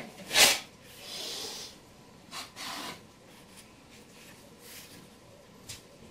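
A trowel scraping mortar across cement board. One loud stroke comes just after the start, then a short hiss and a couple of fainter scrapes, with only faint handling sounds after about three seconds.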